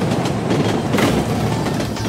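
Passenger train running along the rails, heard from an open carriage door: a steady, noisy rumble, with music faint beneath it.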